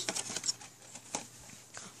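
A few light, scattered clicks and taps in a quiet small room.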